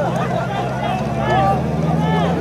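Several voices shouting and calling out at once during a soccer match, over a steady low hum.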